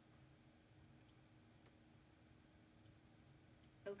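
Near silence: a low steady room hum with a few faint clicks, about one, three and three and a half seconds in, from the computer being clicked and scrolled.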